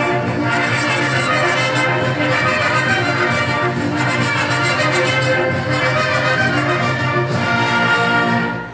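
Brass band playing an instrumental passage of a dance tune, with trumpets and trombones over a steady low bass line.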